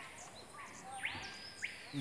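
Faint rainforest ambience: soft background hiss with high, short chirps and a couple of rising-then-falling whistled calls from forest animals.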